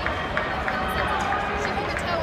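Crowd of spectators at an indoor track meet, many voices talking and calling out at once in a large arena.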